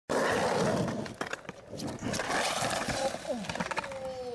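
Skateboard wheels rolling loudly over rough, wet concrete, with sharp clacks and clattering of the board as the rider falls. A person's voice calls out near the end.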